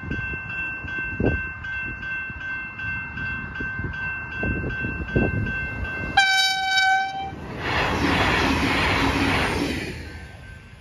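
Level crossing warning bells ringing in rapid, steady strokes while the crossing is closed. About six seconds in, a train sounds one horn blast lasting about a second. A loud rush of noise from the train follows for about two seconds.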